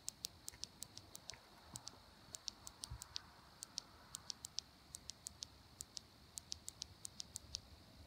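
Faint night insects: many short, high-pitched ticks or chirps at an irregular three to four a second, over a thin steady high-pitched hum.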